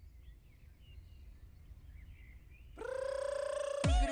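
Opening of a dance-pop music video track: faint bird chirps over a low rumble, then a sustained pitched tone swells in about three quarters of the way through, just before the drum beat starts.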